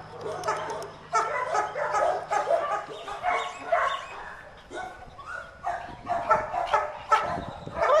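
Dog barking and yipping in a quick run of short calls.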